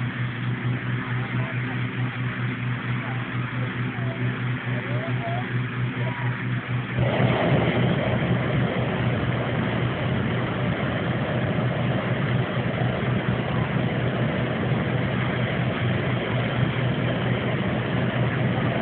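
Hot-air balloon inflator fan engine running steadily with a low hum. About seven seconds in, a propane balloon burner starts firing with a loud, even rushing noise that holds from then on, heating the envelope.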